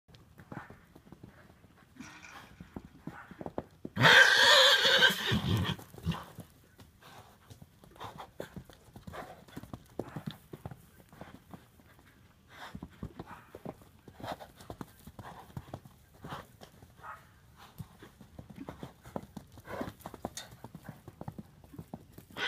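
An Appendix Quarter Horse gives one loud neigh about four seconds in, calling for a herd mate out of sight. Short, uneven hoofbeats on the arena sand run on around it as he moves about.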